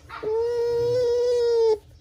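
Bamboo rat giving one long, steady whining call while its back is stroked, the sound of a tame animal fawning for attention. The call starts about a quarter second in and stops sharply after about a second and a half.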